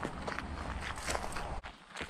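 Footsteps on a dry dirt bush track littered with leaves and bark, a run of short irregular scuffs over a low rumble; the sound drops away abruptly about a second and a half in.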